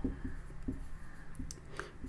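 Marker writing on a whiteboard: a series of faint, short strokes of the felt tip on the board.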